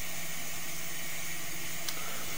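Steady hiss with a faint low hum underneath, and one faint click near the end.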